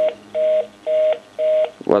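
Busy signal from a Panasonic cordless phone handset: two steady tones pulsing on and off about twice a second, the fast busy that sounds once the other party has hung up and the call has ended.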